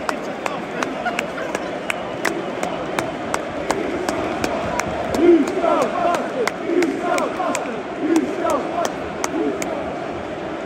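Football stadium crowd noise with sharp, regular claps close by, about three a second. From about halfway, loud shouted calls rise and fall over the crowd, repeating every second and a half or so, like a terrace chant.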